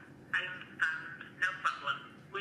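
An automated sales-call voice speaking through a smartphone's loudspeaker, thin and tinny with no low end, in short bursts of words.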